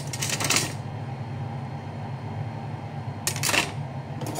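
Knife slicing through a cucumber held in the hand: two short crisp cuts about three seconds apart, over a steady low hum.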